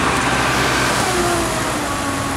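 Steady motor-vehicle engine and traffic noise, with a faint whine that slowly falls in pitch from about a second in.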